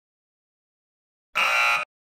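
A single short game-show sound effect, about half a second long, starting and cutting off abruptly, high and bright in tone.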